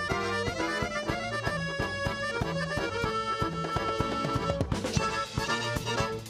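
Live Balkan-style band music: a piano accordion plays a melody over a steady drum beat.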